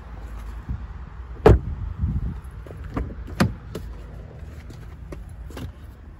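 A 2023 Alfa Romeo Giulia Veloce's car door shutting with one sharp thump about a second and a half in, followed by a few lighter clicks and knocks of the door and its latch being handled.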